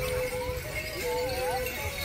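Procession music: a single melody line in long held notes that step between pitches, with a second gliding line about halfway through, over irregular low drum thumps.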